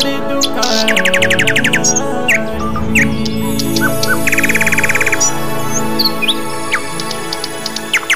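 Keyboard music intro of held chords with bird-call sound effects laid over it: short chirps and two rapid trills, about a second in and again around four to five seconds in.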